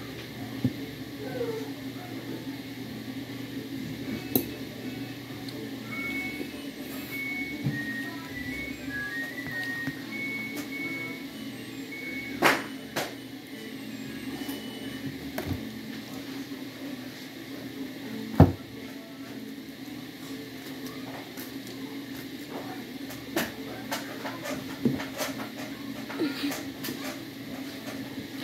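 Knife and utensils clicking against a ceramic plate now and then, the sharpest click about two-thirds through, over a steady low hum. A short run of high, pure notes stepping up and down like a little tune plays for several seconds about a quarter of the way in.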